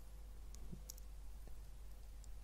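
Quiet room tone with a steady low hum and a handful of faint, short clicks scattered through the first second and a half.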